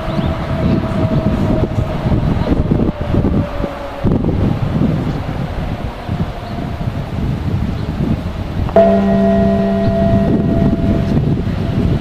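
Electric locomotive horn sounding one blast of about a second and a half, a chord of several tones that starts sharply late on, over the steady rumble of a slow-moving freight train. A fainter held tone fades out over the first few seconds.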